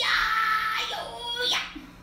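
A woman's strained, drawn-out effort cry, acted out as a hard pull, held for about a second and a half before it breaks off and trails away.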